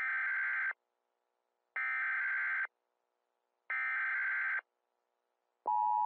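Emergency Alert System alert opening: three short bursts of screeching data tones about a second apart, then the steady two-tone attention signal starting near the end, used as a mock emergency broadcast.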